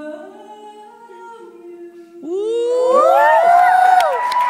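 An a cappella vocal group holds a sustained chord. About two seconds in, loud audience screaming and whooping breaks out over it, many voices sweeping up and down in pitch.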